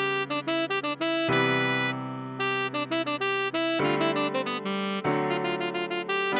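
Computer-rendered tenor saxophone melody line of quick, short notes over sustained electric-piano chords, with new chords struck about a second in, near four seconds, and about five seconds in.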